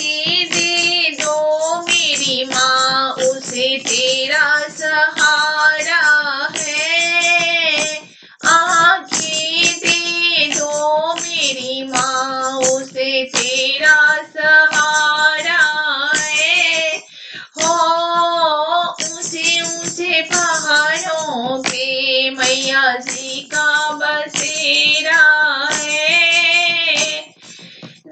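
A high voice singing a Hindi devotional bhajan to the mother goddess, with long wavering held notes. The singing breaks briefly about eight and seventeen seconds in.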